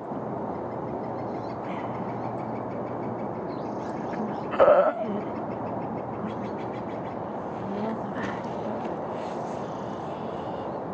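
A ewe in difficult labour gives one short, loud cry about halfway through, over a steady background hiss of outdoor noise.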